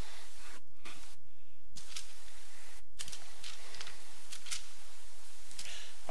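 Steady hiss of the recording's background noise with no voice, cutting out briefly a few times in the first three seconds, with a few faint soft rustles.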